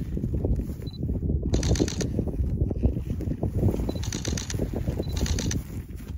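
Wind buffeting the microphone, a steady irregular low rumble. Three short bursts of higher rustling come through it, about 1.5, 4 and 5 seconds in.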